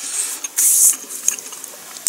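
A person chewing toast close to the microphone: small wet mouth clicks, with a short hissing burst just over half a second in.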